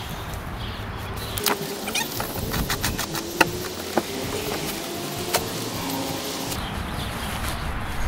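Plastic packaging wrap crinkling and rustling, with sharp crackles, as parts are pulled out of a cardboard box.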